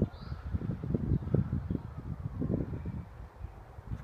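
Wind buffeting the microphone outdoors, an uneven low rumble that comes and goes.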